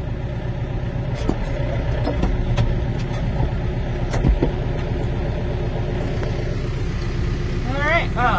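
Tractor engine running steadily at low revs, with a few light knocks over the top.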